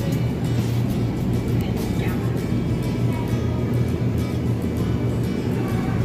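Loud background music, a dense passage with a strong steady bass.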